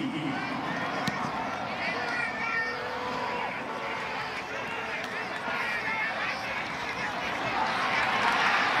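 Steady stadium crowd noise with faint distant voices calling out, and one sharp knock about a second in, the punt being kicked.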